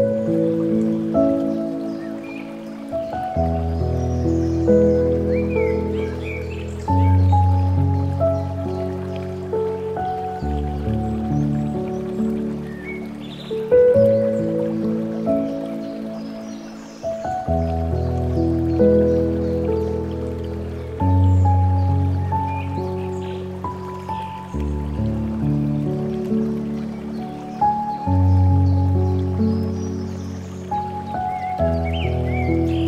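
Slow, calm piano music: a melody over sustained low bass chords that change every few seconds.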